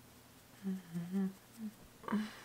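A woman humming softly to herself: a short phrase of three or four low held notes starting about half a second in, and one brief note near the end.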